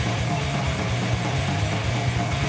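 Heavy metal band playing live: distorted electric guitars and bass through amplifiers over fast, dense drumming.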